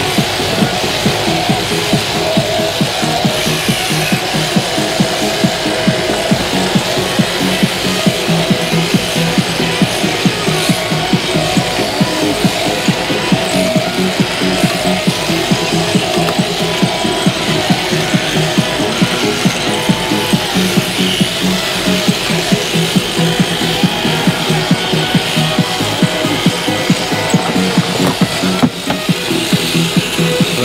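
Electric sheep-shearing handpiece running steadily as its cutter clips the fleece off a ewe, a continuous fast, rhythmic buzz.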